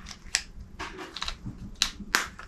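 A handful of light, irregular plastic clicks and taps from a small handheld device being worked in the hands after its battery was changed.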